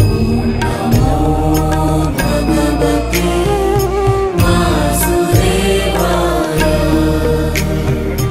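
Devotional music: a chanted mantra sung over a steady low drone, with a few sharp struck accents.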